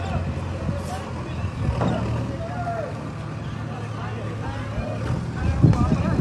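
People talking over a steady low rumble, with a louder low bump near the end.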